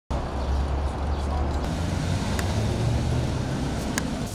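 Street traffic noise: a steady low rumble of passing vehicles under a general city hiss, with a faint click about halfway through and another near the end.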